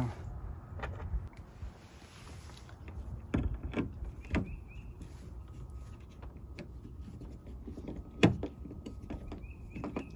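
Phillips screwdriver turning a screw into a plastic expanding clip on a hood-deflector bracket, with scattered small clicks and creaks of the plastic as the screw threads in; the sharpest click comes just past eight seconds.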